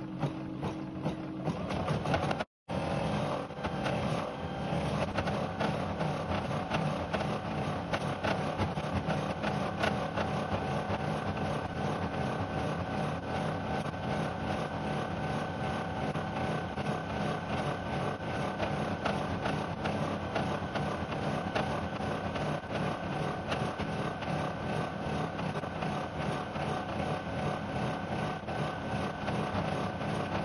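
Rosew ES5 combination sewing and embroidery machine stitching out an embroidery design: a fast, even rhythm of needle strokes over a steady motor hum. The sound cuts out for a split second about two and a half seconds in.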